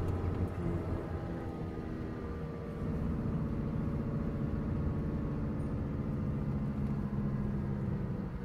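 Car engine running as the car drives through a hairpin bend on a narrow mountain road; about three seconds in, the engine note steps up and gets a little louder.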